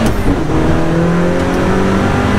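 Dallara Stradale's turbocharged four-cylinder engine pulling hard under acceleration, heard from inside the cabin: after a brief break right at the start, its note climbs slowly and steadily.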